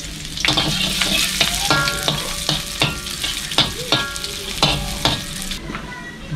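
Chopped garlic sizzling in hot oil in a metal wok while a metal spatula stirs it, with repeated scrapes and clinks of the spatula against the pan and the wok ringing briefly twice.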